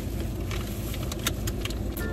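Steady low hum of a car's engine idling, heard inside the cabin, with a few light clicks and rattles.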